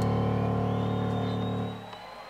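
A live rock band's final chord rings out after the closing hit, held on guitars, bass and keyboards, then fades away near the end.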